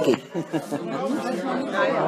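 Several people talking at once in a room: indistinct background chatter, with no other sound standing out.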